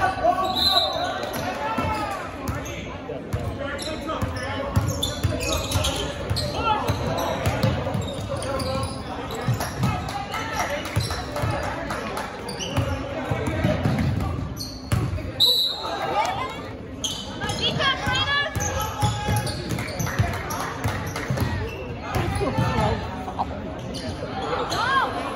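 A basketball dribbling on a hardwood gym floor during play, with players and spectators calling out indistinctly, echoing in a large gym.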